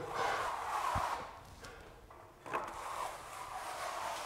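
Steel plastering trowel scraping over wet skim plaster on a ceiling: two smoothing strokes, the second starting about two and a half seconds in.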